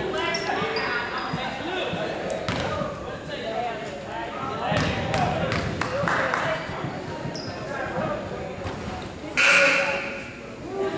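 Basketball game on a hardwood gym court: a ball dribbling, sneakers squeaking and players' voices echoing in the hall. Near the end comes one short, loud, shrill blast from a referee's whistle stopping play.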